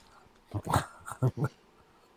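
A man chuckling softly: a few short voiced bursts in the first half, then silence.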